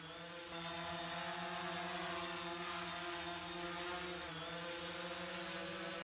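Multirotor agricultural spray drone's propellers humming faintly at a steady pitch. The pitch dips briefly about four seconds in.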